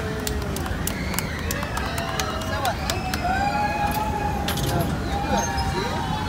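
Young children's voices on a small kiddie hopping tower ride, calling out in long gliding cries, one held steady for about a second near the middle. Underneath are a steady background of crowd noise and scattered sharp clicks.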